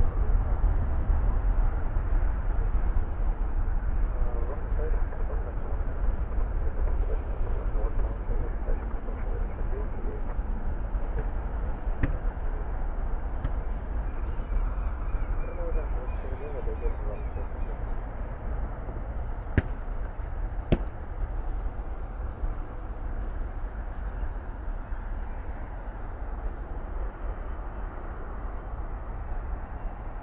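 Steady rumble of jet airliner engines as the aircraft runs through its takeoff roll, with a few sharp clicks about twelve and twenty seconds in.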